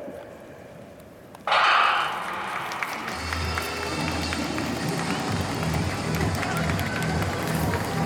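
A starting pistol fires about one and a half seconds in, sending a relay heat away. Spectators then cheer steadily over a rhythmic low beat.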